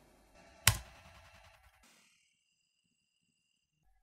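A single sharp keyboard key click, the Enter key launching a test script, with a brief fading tail.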